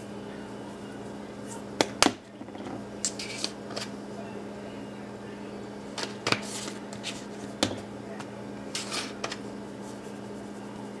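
Spice shakers being shaken over raw chicken breasts in a glass baking dish: several short rattling, hissing bursts of seasoning, with a few sharp clicks of containers handled or set down, the loudest a pair of clicks about two seconds in. A steady low hum runs underneath.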